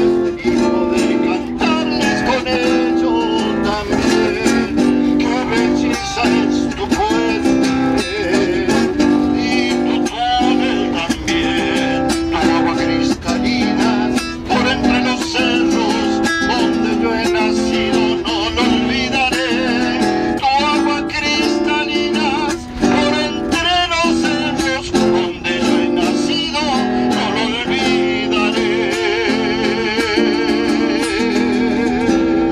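An acoustic guitar is strummed steadily, accompanying a man singing a Patagonian folk song.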